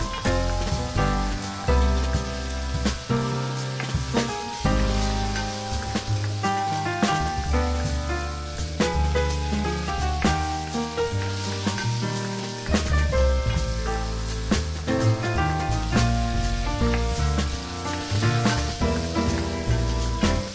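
Chopped banana peel, onion and pepper sizzling in hot oil in a pot, stirred with a spatula, under background music with a bass line and changing chords.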